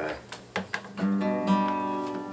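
Acoustic guitar: a few short strokes on the strings, then about a second in a chord is strummed and left to ring.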